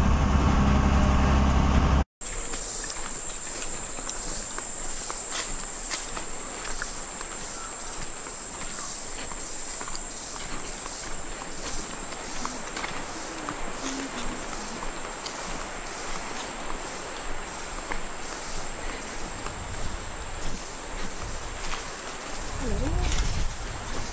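A steady, loud, high-pitched insect chorus shrilling in rainforest, with scattered faint clicks. For about the first two seconds, before a cut, there is a low vehicle rumble instead.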